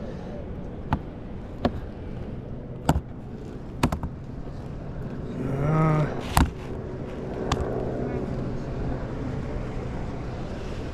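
A series of sharp, short knocks on hard plastic, about six of them spread irregularly, as a Spanish mackerel thrashes and slaps against a cooler lid while it is held down to be measured, over a steady background rumble. A brief voice-like sound comes a little past halfway.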